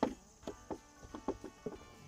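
A string of light wooden knocks and clicks, about eight in two seconds, the first the loudest, as a 2x4 board is picked up and set against a wooden post, over soft background music.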